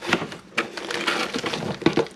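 Cardboard box and plastic wrapping rustling and crinkling as a plastic-wrapped coil of tubing is pulled out of the box: a run of irregular scrapes and crackles.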